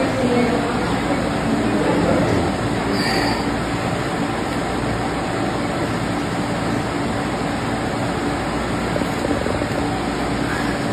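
Steady, loud rushing background noise with a faint low hum under it, unchanging throughout.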